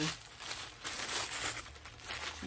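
Black tissue paper crinkling in irregular rustles as a small wrapped packet of yarn is handled and starts to be unwrapped.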